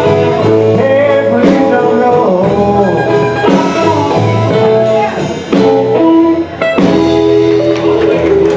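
Live blues band playing, electric guitar to the fore with bending notes over keyboard, bass and drums, with a brief dip and the band coming back in together about two-thirds of the way through.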